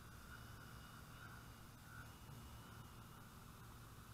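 Faint, near-silent hum of a distant hovering quadcopter, its brushless motors and 17-inch propellers giving a thin steady whine that wavers slightly in pitch, over a low wind rumble.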